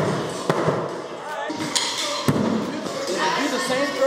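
Throwing axe hitting wooden plank target boards: two sharp wooden knocks, the second, a little past two seconds in, the heavier thud.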